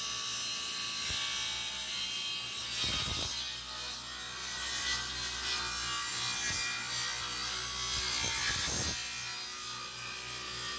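Table saw ripping a wooden board lengthwise along the fence: the blade's cutting noise runs steadily over the low hum of the motor, growing heavier briefly about three seconds in and again near the end.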